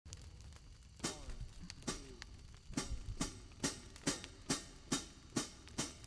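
Quiet, evenly spaced percussive ticks, a little more than two a second, setting the tempo before the band comes in: a count-in.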